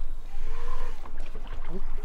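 Inflatable dinghy under way on an electric outboard: a steady low rumble of wind and water, with a faint gliding tone early on. A man says a short 'ooh' near the end.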